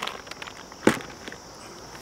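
Packaging being handled during an unboxing: plastic wrapping and paper rustling lightly, with one sharp click a little under a second in.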